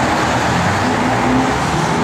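A 598 cubic-inch V8 engine with 3.5-inch Flowmaster dual exhaust idling steadily.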